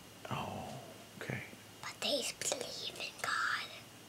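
Whispered speech: a few soft, breathy words with short pauses between them.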